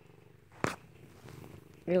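Domestic cat purring faintly and steadily, with one sharp click about a third of the way in.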